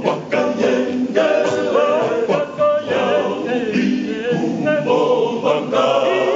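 A choir singing unaccompanied, several voices together in a sustained, wavering melody.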